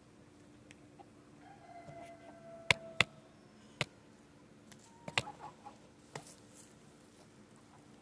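Domestic hens close to the microphone: one drawn-out, slightly falling hen call, with several sharp taps right at the microphone, the loudest two about a third of a second apart.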